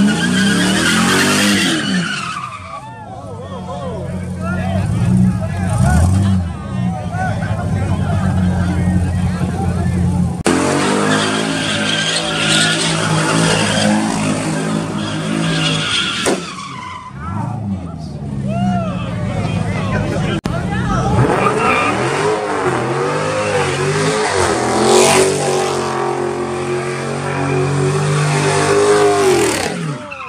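A car doing burnout donuts: the engine revs hard and rises and falls in pitch as the tires spin and squeal on the pavement, easing off briefly about 3 and 17 seconds in.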